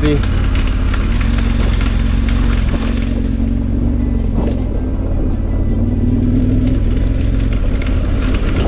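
KTM 1290 Super Adventure R's V-twin engine running at low speed on a rough, muddy dirt track, its pitch wavering slightly as the throttle changes, with scattered clicks and knocks from the bike over the uneven ground.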